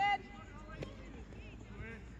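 A shouted word of encouragement at the start, then faint distant voices and one sharp crack about a second in: a wooden shinty caman striking the ball in a shot at goal.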